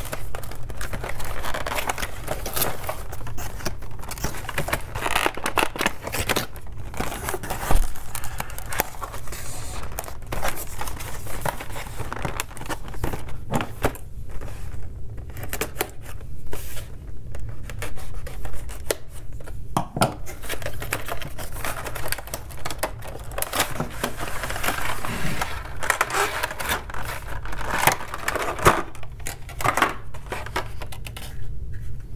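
Cardboard box and clear plastic packaging being opened and handled: irregular crinkling, scraping and clicking of plastic and cardboard as a charging pad is worked out of its tray.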